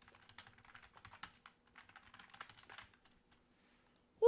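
Faint, rapid typing on a computer keyboard, the keys clicking in quick irregular runs, stopping about three seconds in.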